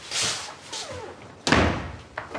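A door slamming shut about one and a half seconds in, sharp and loud, after a softer rustling noise near the start.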